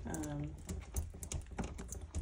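A run of irregular light clicks and taps, with a short hum of a woman's voice near the start.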